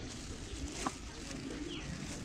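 A dove cooing faintly over steady street ambience, with a single sharp click just before the coo and a short falling chirp near the end.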